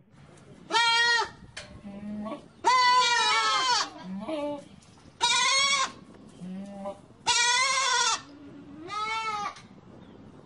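Goats bleating: five loud, high, quavering calls, some short and some held for over a second, with quieter, lower calls in between.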